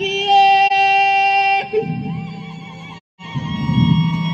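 Live Amazigh ahwash music: a long, high sung note held steady breaks off suddenly about one and a half seconds in, followed by lower singing. The sound cuts out completely for a moment about three seconds in.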